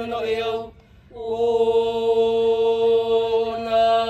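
A group of voices chanting in unison in traditional Polynesian style, holding long steady notes. About a second in they break off for a short breath, then take up a new held note.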